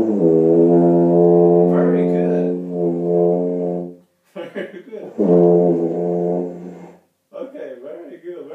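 Rotary-valve tuba played by a beginner: one long, low held note of about four seconds, a short break, then a second held note of about two seconds.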